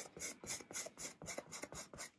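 Paintbrush scrubbing thick paint back and forth on a canvas: a quick run of short, scratchy strokes, about five a second, as the wet colours are worked together on the surface.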